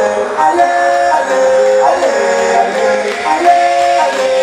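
Loud electronic dance music from a DJ set over a club sound system: sustained tones and melody lines with little deep bass.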